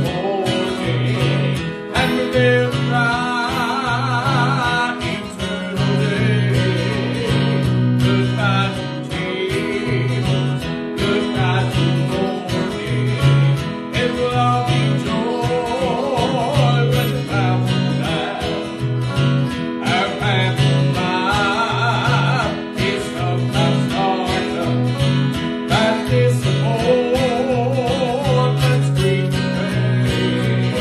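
A man singing a gospel song with vibrato to his own acoustic guitar accompaniment.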